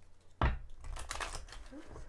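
A deck of tarot cards being shuffled by hand: a sharp knock about half a second in, then a quick run of flutters and clicks as the cards are riffled.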